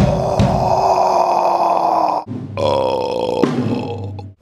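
A man belching loudly, close to the microphone: one long drawn-out belch of about two and a half seconds, then a shorter second belch of about a second after a brief pause.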